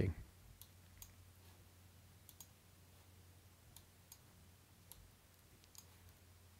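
Faint, irregular computer mouse clicks, about ten in all, some in quick pairs, as mask points are clicked and dragged in editing software. A faint steady low hum runs underneath.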